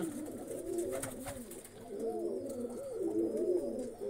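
Several domestic pigeons cooing at once, their low, rolling coos overlapping.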